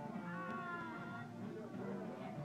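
Faint party music with background voices, and a high gliding, wavering cry about half a second in.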